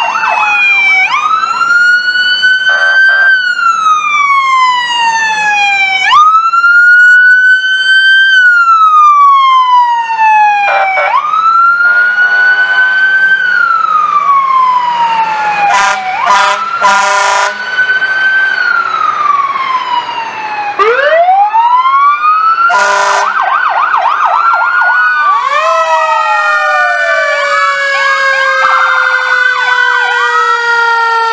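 Emergency vehicle sirens wailing, each cycle climbing quickly and falling slowly about every five seconds, broken now and then by short, rapid yelping bursts. In the last few seconds several sirens sound at once, all falling in pitch.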